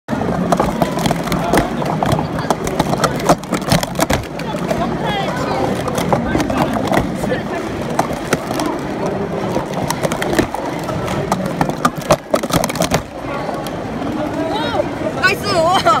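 Plastic sport-stacking cups clacking quickly against each other and the mat as they are stacked up and down in 3-6-3 sequences, in many quick runs of sharp clicks. Steady chatter of a crowded hall runs underneath.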